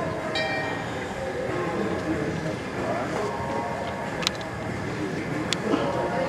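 Indistinct distant voices over a steady rumbling background noise, with two sharp clicks about a second apart in the second half.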